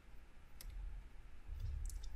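A few faint clicks, one about half a second in and a pair near the end, over a low steady hum.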